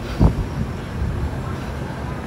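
Wind buffeting the microphone: an uneven low rumble with a brief surge just after the start.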